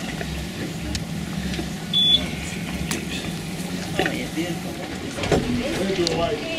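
Cruise boat's engine idling with a steady low hum, with faint voices of passengers in the background.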